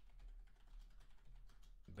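Typing on a computer keyboard: a quick, uneven run of faint keystrokes.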